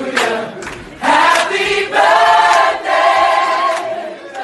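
A group of voices singing together in long held notes, with a short break just before a second in.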